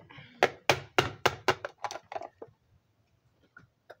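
A rapid run of about a dozen knocks, roughly five a second, stopping about two and a half seconds in.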